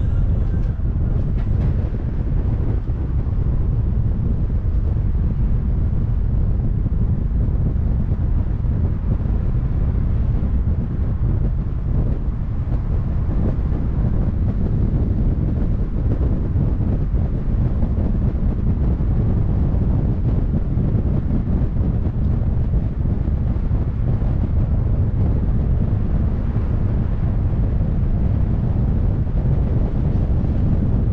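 Wind buffeting the microphone of a camera mounted on the roof of a moving car, a steady low rumble mixed with the car's road noise.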